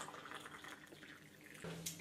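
Hot water from an electric kettle trickling into a mug and tailing off to faint drips, with a light knock near the end.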